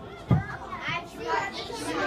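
Children's voices chattering close by, with one brief dull thump about a third of a second in.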